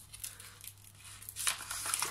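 Backing paper being peeled off adhesive vinyl and transfer tape, a crackling peel that grows louder about halfway through.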